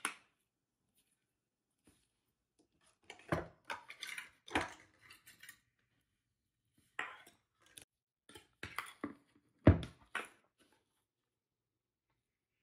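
Scattered clicks and knocks as metal alligator hair clips and ribbon strips are handled and set down on a tabletop, with quiet gaps between; the loudest knock comes about ten seconds in.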